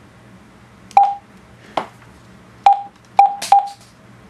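Juentai JT-6188 mobile radio's front-panel buttons being pressed to enter a frequency: five short clicks, four of them each followed by a brief beep of the same pitch, the last three beeps in quick succession.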